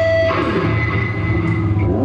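Live rock band playing an instrumental passage: amplified electric guitars over bass guitar, with no vocals.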